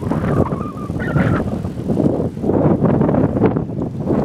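Loud, rushing outdoor noise that swells and falls: wind buffeting the phone's microphone, mixed with road traffic.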